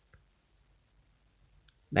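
Near silence broken by two clicks: a faint one just after the start and a sharper one about one and a half seconds in, as the next image is brought up. A man's voice begins right at the end.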